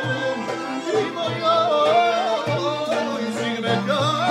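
A live clarinet plays an ornamented, wavering melody over accordion accompaniment with a steady low beat.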